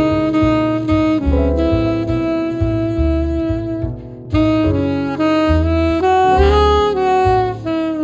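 Saxophone playing a slow jazz ballad melody in long held notes, with a brief breath pause about four seconds in, over a walking bass line accompaniment.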